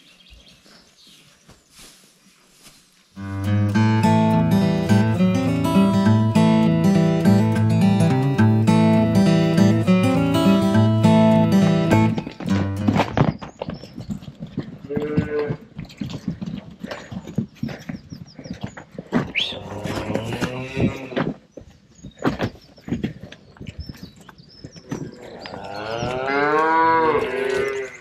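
Background music with a stepping melody for about nine seconds, starting a few seconds in, followed by scattered knocks and cattle mooing, with one loud, long moo near the end that rises and falls in pitch.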